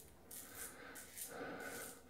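Rex Supply Ambassador adjustable double-edge safety razor, set at 2.5 with a Wizamet blade, scraping faintly through lather and stubble on the cheek in two short strokes.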